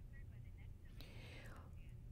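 Near silence in a pause of the voice-over: a low steady hum, with faint breath and mouth noises and a soft click about halfway through.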